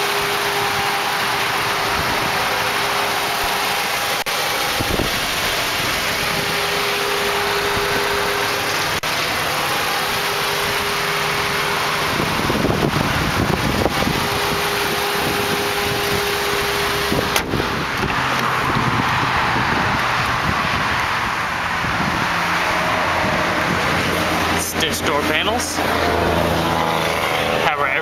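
A Volkswagen 1.8-litre turbocharged four-cylinder engine idling steadily under the open hood. A run of clicks and knocks comes near the end.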